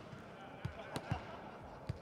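A volleyball bounced on an indoor sports-hall floor, a few short thuds about half a second apart over faint hall ambience.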